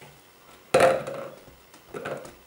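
Handling noise from papier-mâché work with a paste-covered balloon and kraft paper strips: a sudden noisy knock-and-rustle about three quarters of a second in, dying away over about half a second.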